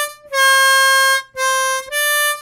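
Diatonic harmonica playing draw notes on hole 4. A held note of about a second is followed by a shorter, slightly lower note that slides back up in pitch near its end.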